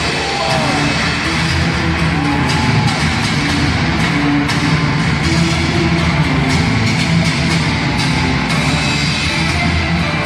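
A wrestler's rock entrance theme with guitar, played loud over an arena PA system.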